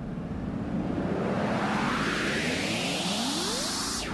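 A rising whoosh of noise in the dance soundtrack, a transition riser that climbs steadily in pitch and grows slightly louder, with a few upward-gliding tones under it.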